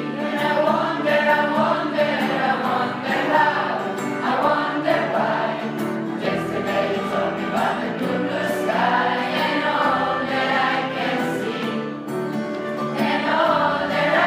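Mixed choir of teenage boys and girls singing together, many voices on sustained, shifting notes.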